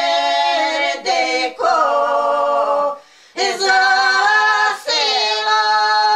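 Three elderly women singing a traditional folk song together, unaccompanied, in sustained held notes. The singing breaks off for a breath about three seconds in, then they hold a long final note.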